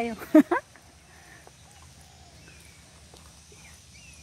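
A few faint, short bird calls over quiet open-air background.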